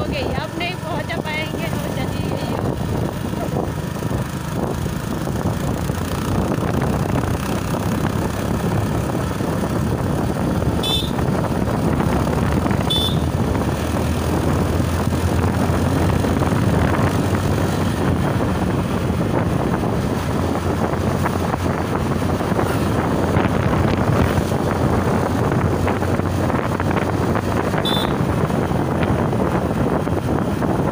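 Motorcycle engine running at a steady cruising speed with continuous wind and road noise, heard from the rider's seat. Three short high-pitched chirps cut through, twice near the middle and once near the end.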